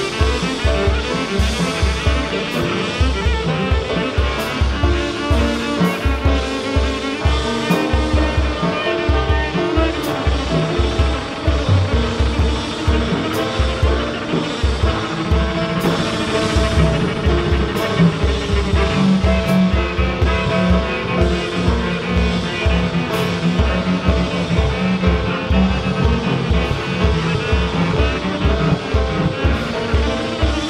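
Piano trio playing free jazz live: a grand piano playing dense, busy lines over a plucked double bass and a drum kit with cymbal strokes, driven by a steady pulse of low notes.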